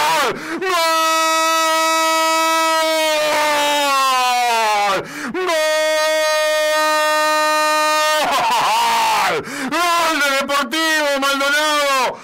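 Radio football commentator's drawn-out goal cry. A shouted "gooool" is held on one steady high note for about four seconds and sags at its end. A second held cry of about three seconds follows, and excited shouted words come in the last few seconds.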